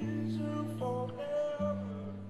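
Electric guitar played live, sustained chords ringing and changing about a second in and again about a second and a half in.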